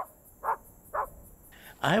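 Three short animal calls, about half a second apart.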